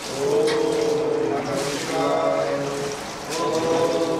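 Vedic mantras chanted in long held notes, three phrases with short breaks between, over a steady hiss of water being poured over a stone Shiva lingam.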